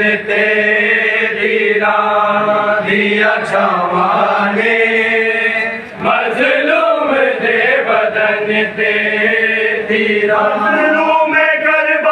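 A group of men chanting a Punjabi noha, a Muharram mourning lament, together, in long drawn-out notes with a brief break about halfway through.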